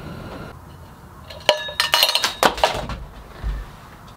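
Hard containers being handled and set down on a wooden workbench: about four sharp clinks around the middle, the first with a brief ring, and a dull thud near the end.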